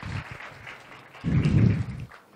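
Handling noise on a handheld microphone: a low rumble in the second half, over a steady hiss of room noise through the sound system.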